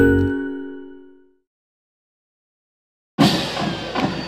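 The final chord of a TV station's bumper jingle rings out and fades away over about a second. Then comes dead silence, and about three seconds in the live stadium background noise cuts in suddenly.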